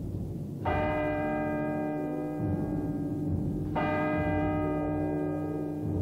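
A church bell tolling slowly, two strikes about three seconds apart, each ringing on into the next, over a low rumbling drone: a bell striking midnight.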